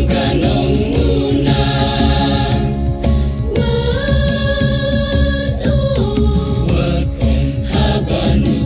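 A choir singing over a steady beat and a strong bass accompaniment, with a long held note from about three and a half seconds to nearly six seconds in.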